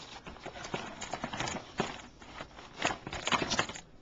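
Hands rummaging through a box of small items in clear plastic bags: crinkling plastic with irregular clicks and knocks, a few sharper knocks in the second half.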